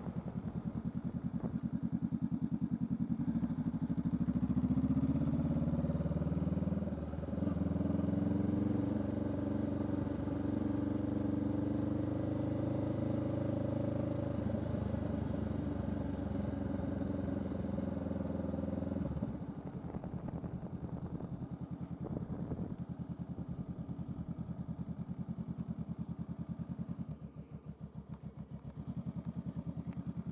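Honda Rebel 500's parallel-twin engine running at low road speed. About two-thirds of the way through it drops off the throttle to a quieter, evenly pulsing idle as the motorcycle rolls to a stop.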